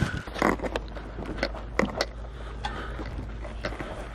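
Irregular light clicks and knocks from small cardboard boxes of bearings and parts being handled and picked up, over a steady low hum.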